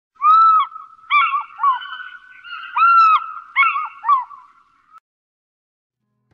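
A large bird calling: ringing honk-like calls in two bursts, each a long call followed by three short ones, stopping about five seconds in.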